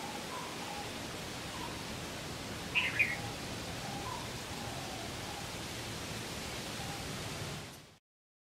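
Open-air ambience: a steady hiss with faint, scattered bird calls and one louder, short bird chirp about three seconds in. The sound fades out near the end.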